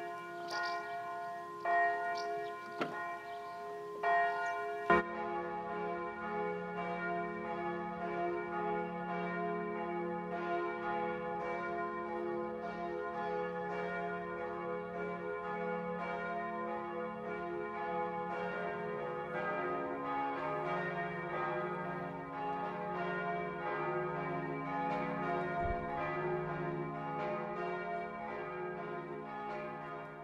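Church bells ringing: a single bell struck a few times with long ringing decays, then from about five seconds in several bells of different pitch ringing together in a continuous peal, with a lower bell joining about twenty seconds in.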